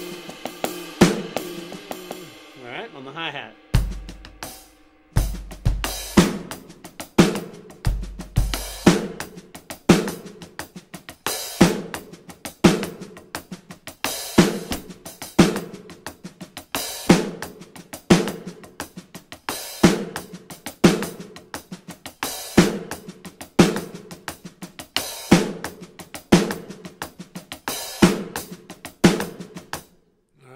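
Electronic drum kit playing a slow, busy funk groove: kick drum, snare backbeat and a broken hi-hat pattern split between the right and left hands. It stops briefly about four seconds in, then runs on in a steady repeating pattern.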